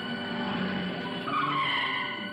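A van's tyres squeal as it swings hard round a curve, starting a little past halfway and lasting nearly a second, over background music.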